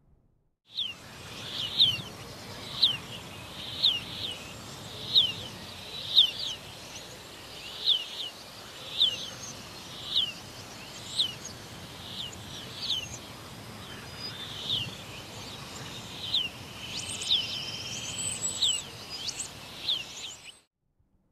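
A bird calling with short, falling chirps repeated about once a second over a steady outdoor background hiss, with a few different calls near the end.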